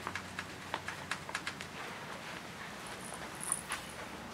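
Scattered light clicks and taps of hands working at the floor by an ATM cabinet, with a short high scratchy sound about three and a half seconds in.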